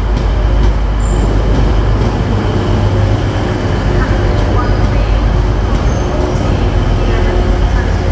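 Class 185 diesel multiple unit passing close by, its underfloor Cummins diesel engines running with a steady deep hum over the rumble of wheels on the rails as the train moves along the platform and away.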